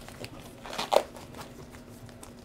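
Quiet handling rustle at a table, with one short sharp sound about a second in.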